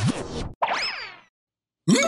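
Cartoon sound effects: a springy, boing-like glide that rises and falls about half a second in, as a stretchy cartoon arm yanks a character away. It is followed by about half a second of silence, and a new effect starts just before the end.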